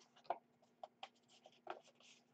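Faint rustling and a few soft taps of a rolled construction-paper cylinder being pressed and turned in the hands.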